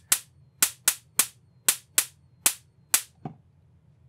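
Cheap '1000 KV' high-voltage arc generator module firing sparks across its air gap: nine sharp snaps at irregular spacing, about two or three a second, the last one weaker. Its bench supply is current-limiting at about one volt while it runs.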